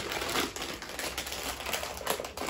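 A shiny plastic snack bag crinkling and crackling as hands tug and twist at its sealed top, struggling to pull it open.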